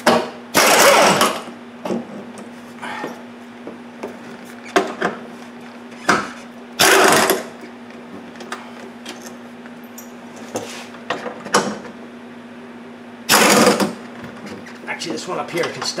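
Hand-held air tool on the 10 mm bolts of a wiper linkage mount, running in three short bursts of about a second each, with light clicks of metal parts being handled between them.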